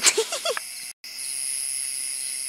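Night insects singing in a steady, high-pitched chorus. A brief vocal sound comes right at the start, and the sound drops out for an instant about a second in.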